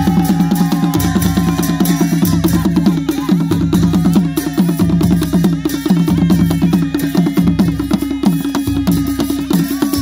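Nepali village baaja folk music: fast, steady hand-drum strokes over a held low drone, with a small horn's melody trailing off early on.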